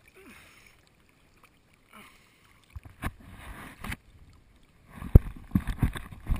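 Pool water splashing and sloshing close to a camera held at the water surface: quiet at first, then louder splashes from about three seconds in, with a few sharp knocks, the loudest just after five seconds.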